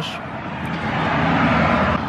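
A car driving past: a rush of engine and tyre noise that swells over the two seconds.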